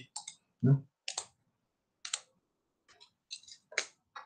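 About eight short, sharp clicks of computer input (mouse or keyboard), irregularly spaced, made while the pen annotations are being wiped from the lecture slide.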